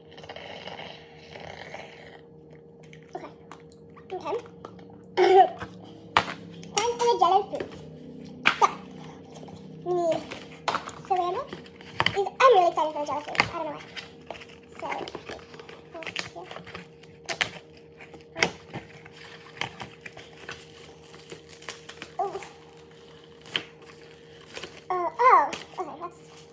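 A girl's sped-up, unnaturally high voice in short spurts of talk and laughter, mixed with frequent sharp clicks and handling noises from things being picked up and set down on a stone counter. A faint steady hum runs underneath.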